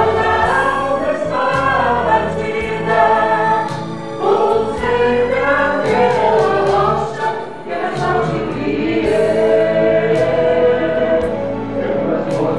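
Mixed-voice church vocal ensemble singing a gospel song in Portuguese in parts, over an instrumental backing with a low bass line.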